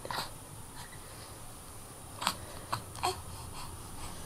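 An infant makes a few faint, short vocal sounds, three in quick succession about two to three seconds in, over quiet room tone.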